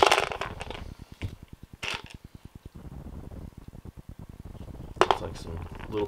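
Gravel and dirt rattling in a quarter-inch classifier screen, dying away just after the start; then quiet handling with a short clatter about two seconds in and a louder one about five seconds in as small stones are tipped into a plastic gold pan.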